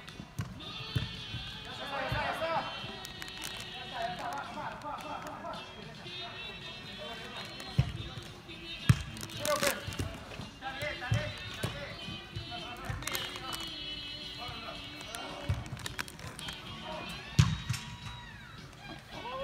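Soccer ball being kicked on indoor artificial turf: several sharp thuds, the loudest about eight seconds in, again a second later, and near the end. Players' voices in the background, over music playing in the hall.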